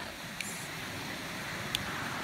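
Steady rushing of wind, with two faint clicks, the first about half a second in and the second near the end.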